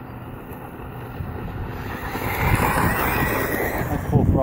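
Electric-converted Ofna LX RC buggy driving fast over gravel. The whine of its brushless motor and the hiss of its tyres on loose gravel build from about halfway in as it comes closer. Wind rumbles on the microphone throughout.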